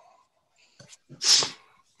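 A single short, loud burst of breath from a person, about a second and a quarter in, over a video call.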